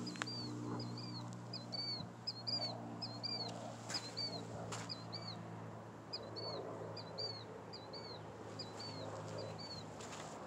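A bird repeating a short, high two-part chirp about twice a second, over a steady low hum.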